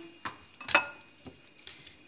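Metal spoon knocking against a glass bowl while pressing soft boiled cauliflower: a few light clicks, the loudest a short ringing clink about three quarters of a second in.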